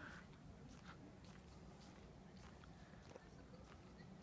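Near silence: faint background hiss with a few soft ticks.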